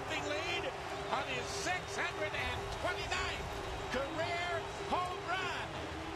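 Quiet speech from a baseball TV broadcast's commentary playing in the background, with a faint steady hum underneath.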